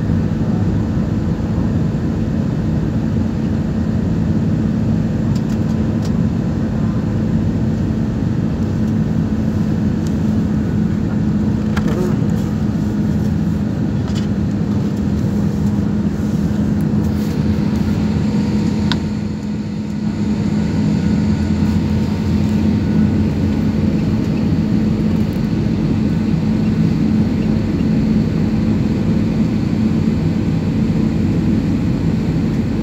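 Steady cabin noise of a jet airliner in flight: engine and airflow rush with a constant low hum, dipping briefly about two-thirds of the way through.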